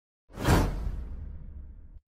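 A whoosh sound effect for a smoke-burst subscribe-button animation. It starts suddenly about a quarter second in, peaks at once, and fades out slowly over a low rumble.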